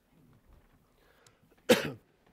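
A single short cough near the end, standing out against an otherwise near-silent room.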